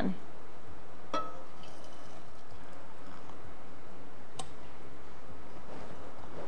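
Hot water poured from a stainless steel kettle into a porcelain teapot, a steady stream with a light click about a second in and another later.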